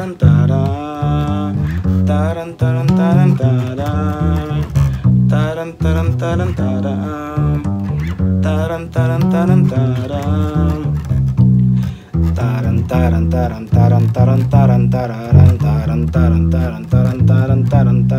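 Five-string electric bass played fingerstyle: a quick, busy line of short plucked notes that moves through the song's repeating minor-chord changes.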